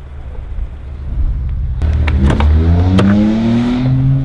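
A vehicle engine accelerating: a low rumble at first, then from a little before halfway it grows loud and its pitch climbs steadily, with a few sharp clicks over it.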